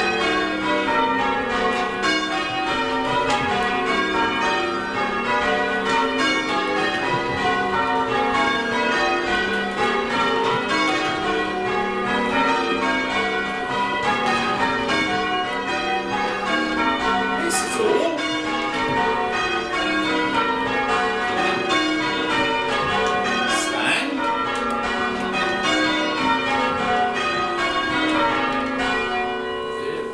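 Church bells being change-rung by a team on the ropes, heard from the ringing chamber below the bells. It is a continuous run of rows, each a sequence of single bell strokes stepping down in pitch one bell after another.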